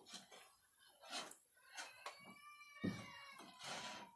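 Faint scraping strokes of a wooden paddle stirring garri (toasted cassava granules) in a shallow metal frying pan. In the second half a high, drawn-out call about a second and a half long sounds over it.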